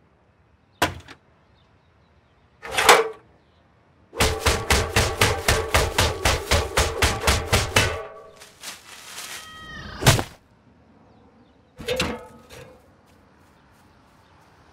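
Cartoon sound effects of a metal ladder being handled: a click, a short swish, then about four seconds of rapid, even clattering with a ringing tone, followed by a sharp impact and a second knock near the end.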